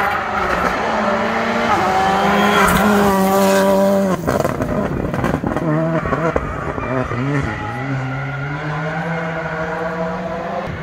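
Rally car engine under hard throttle, its pitch climbing in steps through the gears, dropping sharply about four seconds in, then revving and rising again.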